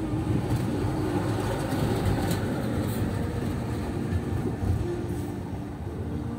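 Steady low rumble of a car's engine and tyres heard from inside the cabin while driving slowly.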